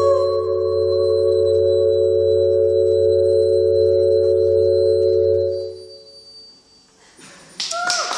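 Keyboard synthesizer holding a sustained chord over a low bass drone, which fades out about five and a half seconds in. After a short near-silent gap, a dense, noisy sound starts suddenly near the end, with a voice coming in over it.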